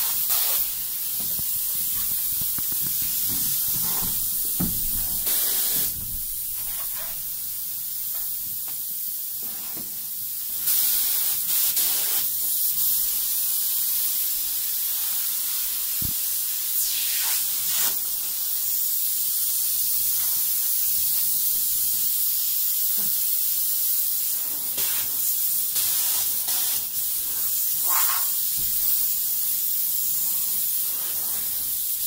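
Spray polyurethane foam gun spraying insulation into a wall cavity: a steady high hiss of the foam jet. It eases off for a few seconds near the start and comes back louder from about ten seconds in.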